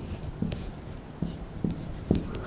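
Marker pen drawing on a whiteboard: a series of short, separate scratching strokes.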